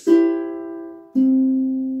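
Ukulele fingerpicked in the 'Puxa 3' pattern: strings 4, 2 and 1 plucked together, ringing and fading, then about a second later string 3 plucked alone with the index finger, a lower single note.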